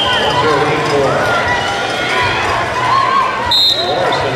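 Arena crowd voices calling and chattering, with a short, high referee's whistle blast near the end, the signal that restarts the wrestling bout.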